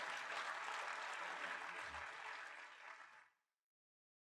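Audience applause in a concert hall, fading down and then cut off into silence a little over three seconds in: the fade-out at the end of a live track.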